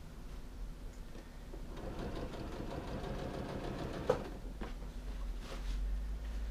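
Janome electric sewing machine stitching a seam through jacket fabric, with a run of quick, even stitches for a couple of seconds in the middle. A single sharp click follows about four seconds in.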